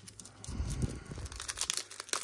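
A foil trading-card pack wrapper being torn open and crinkled by hand, a run of irregular crackles.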